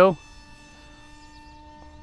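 Faint, steady whine holding several fixed tones, from the E-flite Aeroscout's electric motor and three-blade propeller flying high overhead.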